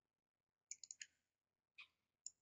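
Faint computer mouse clicks: four quick clicks a little under a second in, then another near the end.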